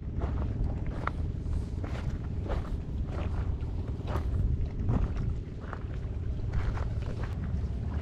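Wind on the microphone of a body-worn camera, a steady low rumble, with a few faint clicks scattered through it.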